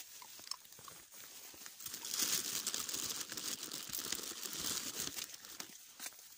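A dog chewing a chew stick, with irregular crunching and crackling bites that grow busier about two seconds in.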